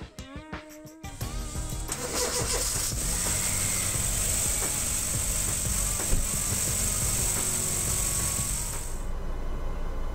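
Car engine starting about a second in, jump-started from a portable lithium jump starter clamped to its weak battery, then idling steadily with a high hiss over the engine note until it drops away shortly before the end.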